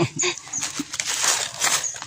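Dry leaf litter and loose soil rustling and crackling as hands dig and rummage through it, with two brief high chirps, one near the start and one near the end.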